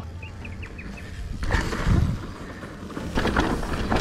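Mountain bike tyres running over a dry, loose dirt trail, with low wind buffeting on the helmet-camera microphone that swells about two seconds in and a short rattle of the bike over bumps a little after three seconds. A bird chirps a few times in the first second.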